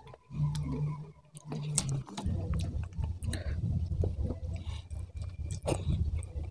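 Close-miked chewing of a hand-fed mouthful of food, with wet mouth clicks and lip smacks throughout. A low steady hum fills the first two seconds, then the chewing grows denser and louder.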